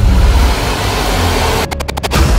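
Trailer sound design: a loud, deep rumbling drone under a wash of noise, breaking into a rapid stutter of short cutouts near the end.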